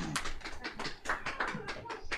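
Applause from a small audience: separate hand claps, several a second, at the close of a talk.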